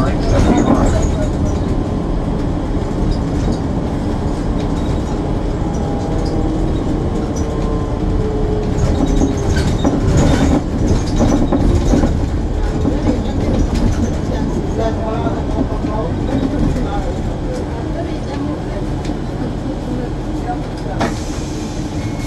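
Interior rumble of a moving city transit vehicle, steady and loud, with a faint whine that slides down in pitch midway and a few knocks and rattles.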